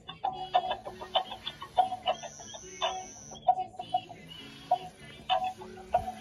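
Electronic dancing giraffe toy playing its built-in tune: a string of short, bouncy electronic notes over a simple bass line.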